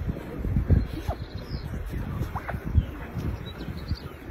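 Gusty wind buffeting the microphone in irregular low rumbles, with a few short, thin, high squeaks about a second in and again around two and a half seconds.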